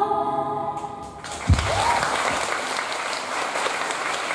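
Two female voices holding the final sung note of a duet, which stops about a second in; then audience applause follows to the end, with a single low thump just after it begins.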